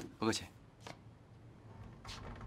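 A short spoken word, followed by quiet room sound with a faint click just under a second in.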